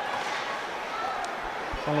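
Ice hockey rink ambience: a steady hiss of crowd noise and skating on the ice, with a couple of faint clicks about a second in. A commentator's voice comes in just before the end.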